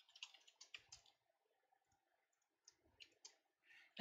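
Faint computer keyboard keystrokes typing a password: a quick run of clicks in the first second, then a few more about three seconds in.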